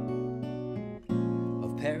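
Steel-string acoustic guitar ringing out a chord, then a new chord strummed about a second in that rings on. A man's singing voice comes back in near the end.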